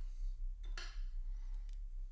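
A few light metallic clinks and a short scrape from small watchmaking tools and fingers handling a wristwatch case, the clearest just before a second in.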